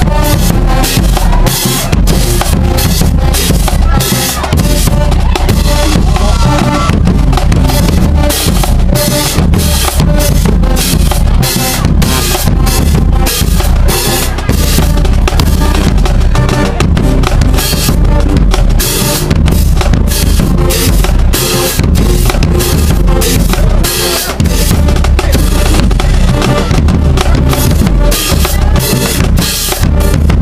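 Marching band playing loud and close: sousaphones and other brass over a drumline of bass drums and snare drums with crashing cymbals, keeping a steady, fast beat.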